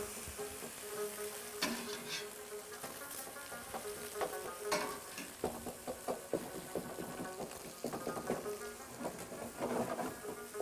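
Blanched vegetables and scrambled egg sizzling in a wok over a gas flame. A wooden spatula stirs them, scraping and knocking against the pan, with the strokes coming thicker in the second half.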